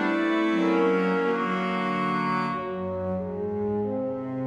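Chamber ensemble playing slow, sustained chords of a pavane. The higher notes fall away about two and a half seconds in, and a low held note comes in beneath.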